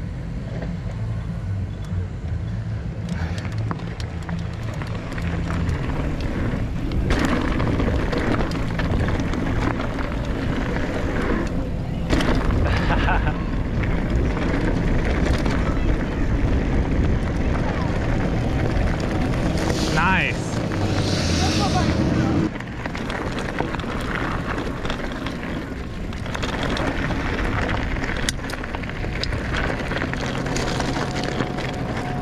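Mountain bike rolling fast over dirt and gravel: continuous tyre rumble with wind buffeting the microphone. About twenty seconds in comes a brief high whine that wavers in pitch, and the rumble drops suddenly a couple of seconds later.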